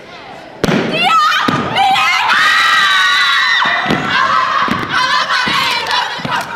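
A step team's stomps hit the gym floor with a sudden thud about half a second in, followed by more thuds. A crowd yells, screams and cheers loudly over them, with long held screams in the middle.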